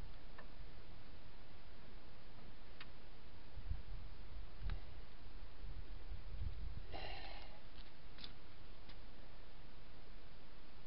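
A DJ-5 Jeep's rear axle shaft being worked into its axle housing by hand: a few dull low thumps and light metal clicks over steady background noise, with a short wavering sound about seven seconds in.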